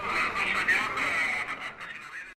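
Indistinct voices over background noise, fading out near the end.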